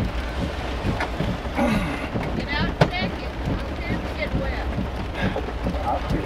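Inside a vehicle cabin, the engine idles with a steady low hum. Muffled, indistinct voices and a few sharp taps sound over it.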